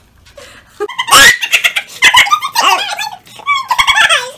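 A person's wordless vocal sounds. After a quiet start there is a sudden loud outburst about a second in, then a run of short, high-pitched squeals.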